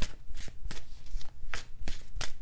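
A tarot deck being shuffled by hand: a quick run of short, irregular card flicks and slaps as cards fall from hand to hand.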